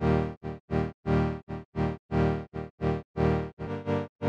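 A synth chord from Ableton's Analog instrument, two saw waves with a little noise and a low-pass filter, chopped on and off in a rhythmic long-short pattern about two to three times a second by automated volume, giving a pulsing 'whir whir whir' effect. The chord changes near the end.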